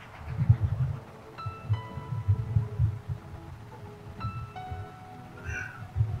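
Background music: short, clear melodic notes at changing pitches over a low pulsing beat, with a brief higher-pitched sound near the end.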